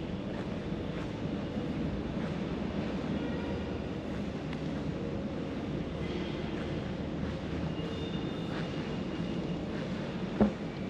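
Steady low rumbling background noise with a faint steady hum, and a few faint short high tones now and then.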